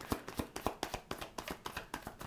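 A deck of tarot cards being shuffled by hand, a quick, irregular run of light card-on-card clicks, several a second.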